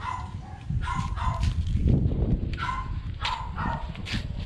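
Dog barking repeatedly in short volleys of two or three barks, over a low rumble that is loudest about two seconds in.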